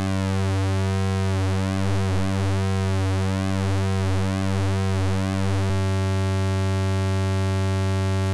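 ATX1 analog oscillator's pulse wave as a low buzzing drone, its pulse width swept by modulation so the tone shifts in a repeating, phasing way. At about six seconds a click is heard and the sweep stops, leaving a steady tone.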